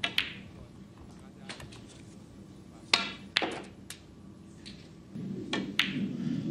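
Snooker balls clicking: the cue tip striking the cue ball and the balls knocking together, a handful of sharp, separate clicks with pauses between them, the loudest about three seconds in.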